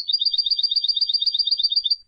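European goldfinch singing a fast, high trill of evenly repeated notes, about nine a second, stopping near the end.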